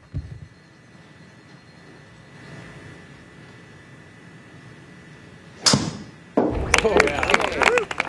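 Quiet room tone, then a golf driver smacks a ball off a hitting mat into an indoor simulator screen with one sharp hit about five and a half seconds in. Voices and noisy reaction follow right after.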